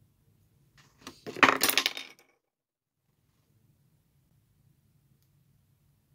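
A brief burst of metallic clinking and jingling, like small metal objects knocking together, starting about a second in and lasting just over a second.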